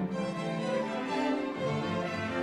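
Orchestra playing, with bowed violins to the fore over lower strings: sustained notes that move from pitch to pitch every half second or so.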